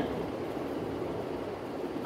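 Steady background room noise, an even hiss with no distinct events.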